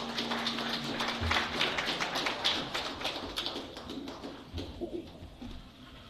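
A small audience clapping after a song: quick, uneven claps that thin out and stop after about four and a half seconds.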